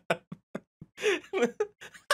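A man laughing in short, rapid bursts of about five a second, then a voice talking about a second in.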